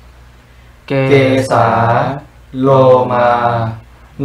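A man's voice slowly chanting two Pali words, 'kesā' then 'lomā' (head hair, body hair), each drawn out for about a second. They are the first of the five basic meditation objects, recited one at a time.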